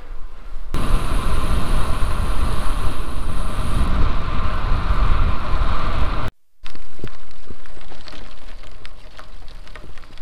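Wind rumbling and buffeting over the microphone of a camera riding along on a bicycle. After a sudden break, bicycle tyres crunch over a loose gravel farm track, with many small stone clicks and pings.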